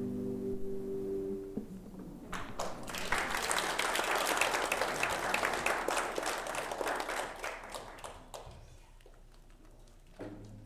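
The last chord of a nylon-string classical guitar rings out and stops about a second and a half in. About a second later a congregation starts applauding for several seconds, then the clapping fades away near the end.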